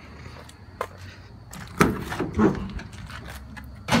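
Clunks and clicks of a van door and its lock hardware being worked, the loudest a sharp clunk about two seconds in, followed by a few smaller knocks.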